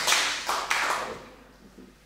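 Audience applause dying away: a few last separate claps in the first second, then fading out.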